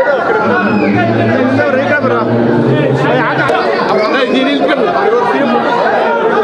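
Crowd chatter: many people talking at once, with no single voice standing out. A low steady hum sits under the voices for a couple of seconds from about a second in.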